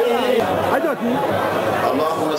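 People talking, several voices at once.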